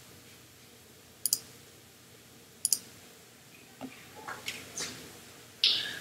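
Two computer mouse clicks, each a quick double tick, about a second and a half apart, then faint handling noise.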